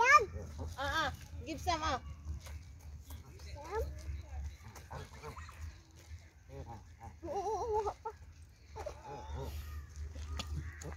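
Canada geese close by giving short nasal calls, several times, with one longer wavering call about seven seconds in.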